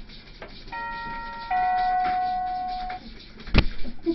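Two-note doorbell chime: a higher note, then a lower note held for about a second and a half. A sharp knock follows near the end.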